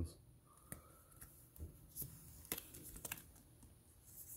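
Faint scattered clicks and light plastic rustling from handling Pokémon trading cards in clear plastic penny sleeves.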